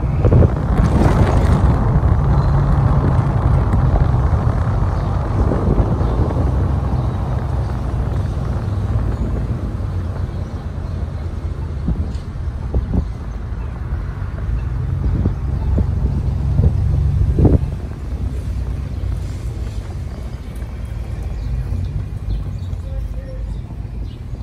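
A vehicle driving, a steady low engine and road rumble with wind buffeting the microphone. A few sharp knocks come in the middle, and the rumble eases a little after about 17 seconds.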